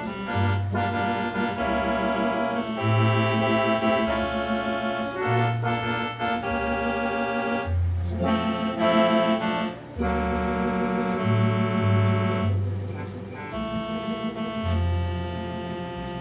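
Gulbransen electronic organ playing a slow, mellow tune on tibia (sine-wave) voices: held chords over a bass line that moves to a new note about every second.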